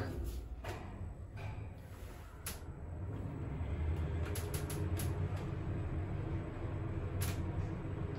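Schindler 3300 machine-room-less traction lift car travelling down the shaft: a steady low rumble and hum in the car that grows a little louder about three seconds in, with a few light clicks.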